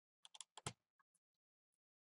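Faint, quick clicks from a small screwdriver working the screen-bezel screws of an ASUS Eee PC 1005HA netbook: about five in half a second, then one more a moment later.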